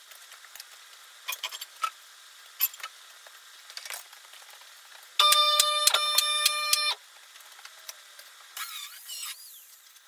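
Two-post car lift's electric hydraulic pump running for a little under two seconds in the middle, a loud steady whine with clicks through it, as the lift raises a car body. Scattered light clicks and knocks before it, and a short scraping rustle near the end.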